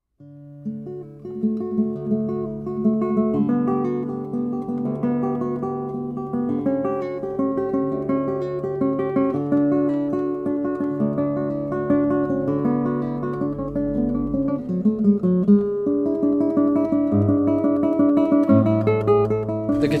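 Solo classical guitar by Scottish luthier Michael Ritchie, fingerpicked: a piece of plucked melody notes and chords over sustained bass notes.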